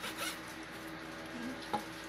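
Kitchen knife slicing through raw chicken onto a plastic cutting board: a short scraping stroke just after the start and a light tap about three quarters of the way in, over a faint steady hum.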